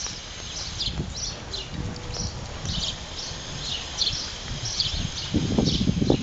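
Small birds chirping in short, repeated high calls over a low outdoor rumble that swells near the end.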